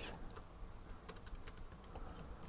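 Typing on a computer keyboard: a scatter of faint, irregular key clicks.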